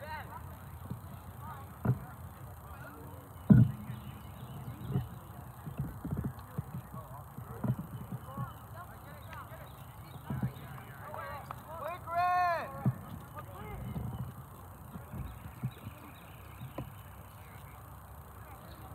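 Outdoor sound at a youth soccer game: a low rumble on the microphone with scattered thumps, and one long shout from a voice on the field about twelve seconds in.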